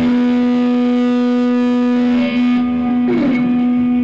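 Distorted electric guitars through amplifiers holding one sustained note that rings on steadily with the drums stopped. About three seconds in, a short sliding note drops in pitch beneath it.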